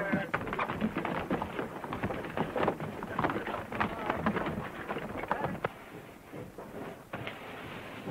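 Early sound-film soundtrack of a ship-board brawl and fire: a dense, irregular jumble of crackles and knocks with scattered faint shouts, growing quieter in the second half.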